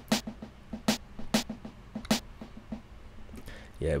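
Programmed trap-style snare pattern played back alone: a few sharp snare hits spaced unevenly, each followed by quieter delay repeats.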